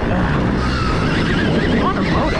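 Wind noise on a helmet-mounted microphone and tyre noise on dirt as a Stark Varg electric motocross bike is ridden along the track, with a faint motor whine rising and falling in pitch.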